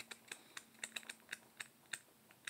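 A quick, irregular series of faint, light clicks and ticks, about half a dozen a second, like paper pages of the card deck's guidebook being leafed through.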